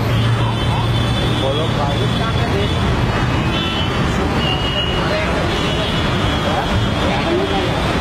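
Steady outdoor street noise: a constant traffic hum with background voices and chatter.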